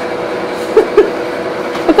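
Steady hum of the cold room's cooling equipment, two even tones, with two short blips about a second in.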